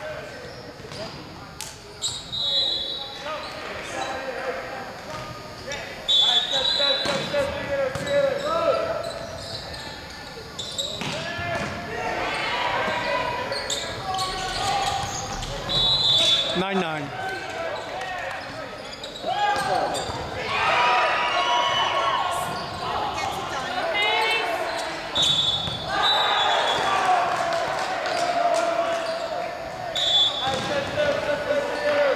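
Indoor volleyball play in a large gym: players' voices calling out, the ball being struck several times, and brief high-pitched squeaks, all with the echo of a large hall.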